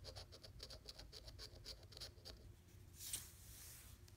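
Metal coin scratching the coating off a paper scratch-off lottery ticket: a quick run of short strokes, about four or five a second, for a little over two seconds, then one longer, louder swipe about three seconds in.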